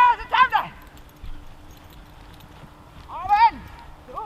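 Giant schnauzer barking during protection work: a few loud barks at the start and another one or two about three seconds in.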